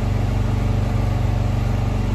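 A steady low engine-like hum with a fine, even throb, holding one pitch without change.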